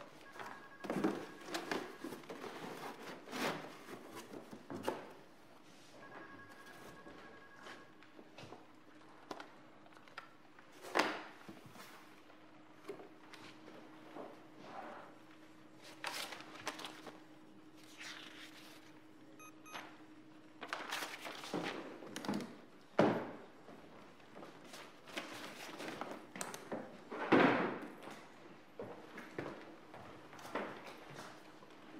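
Scattered thuds and knocks of office objects being handled: folders, cardboard boxes and a wooden desk drawer being moved and opened in a small room. A faint steady low tone runs under the middle stretch.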